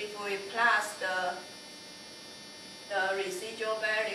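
A person speaking in short phrases, with pauses, over a steady electrical hum.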